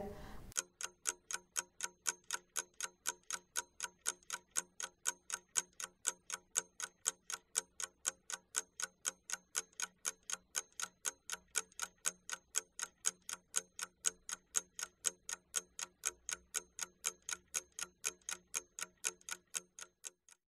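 Steady, even clock-like ticking from a timer sound effect, about four ticks a second, giving time to work on the task. It starts about half a second in and stops just before the end.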